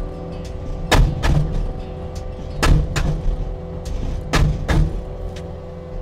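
Hammer SM40 hydraulic post driver striking a steel fence post: three heavy blows about every second and a half to two seconds, each followed closely by a lighter knock, over the steady running of the tracked loader's engine. The post is not going in and the blow bounces back, which the operator puts down to the post having hit a rock.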